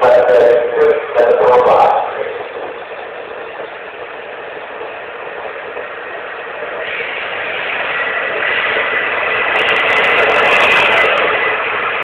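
An HST (InterCity 125) train accelerating past, with a steady rush of coaches and wheels. From about seven seconds in, the diesel engine of the rear power car grows louder, with a steady whine, as it draws level.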